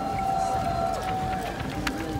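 Marching boots of a column of soldiers on a wet paved street, with a voice in the crowd holding one long high note for about a second and a half. A sharp click comes near the end.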